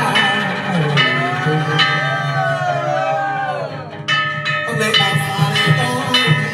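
Chầu văn ritual music: a sliding, ornamented melodic line, most likely sung, over plucked lute and steady low notes, about a second in and lasting a couple of seconds, with the accompaniment running on.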